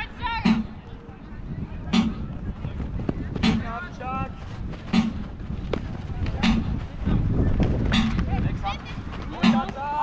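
A timekeeper's drum struck at an even beat, one stroke about every second and a half, counting the 'stones' (game time) of a Jugger round. Players shout and call to each other between the strokes.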